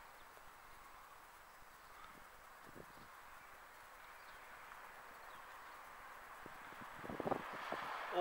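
Faint, steady outdoor background noise, with a few soft knocks near the end.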